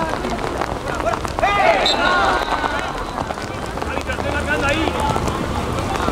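Players' shouts on a football pitch during play, calling out at about one and a half seconds in and again near the middle, over a steady background hiss.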